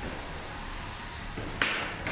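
Steady noise in a combat-robot arena, then a single sharp impact about one and a half seconds in as the 3 lb robots collide or strike the arena wall.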